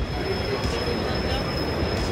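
Steady background noise of a busy pedestrian area, with a thin, high-pitched steady whine held throughout.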